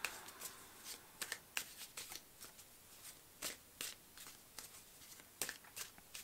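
Tarot deck being shuffled by hand: a quiet string of short, irregular card snaps and slides.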